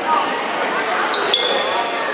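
Badminton rally on a wooden gym floor. A sharp racket hit on the shuttlecock comes about a second in, along with a high squeak of sneakers on the floor that steps down in pitch, over steady crowd chatter.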